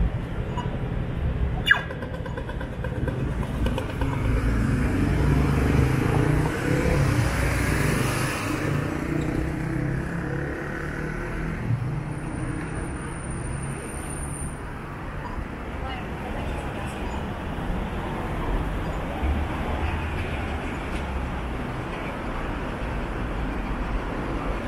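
City street ambience: steady traffic noise with low rumble, swelling as a vehicle passes between about four and nine seconds in, over background voices. One sharp click a couple of seconds in.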